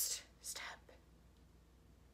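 A woman whispering briefly about half a second in, then near silence: room tone.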